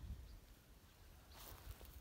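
Near silence: faint low handling rumble and footfalls from a phone carried while walking over garden soil and dry leaves, with one short rustle about one and a half seconds in.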